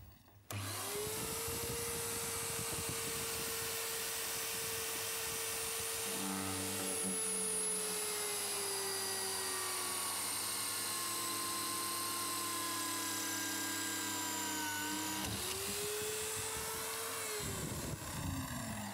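Electric drill in a drill stand, a carbide-tipped multi-purpose bit boring through a hardened steel file. The motor starts about half a second in and runs steadily, its pitch slowly sagging as the bit bites into the steel, then it picks up speed again briefly near the end and stops.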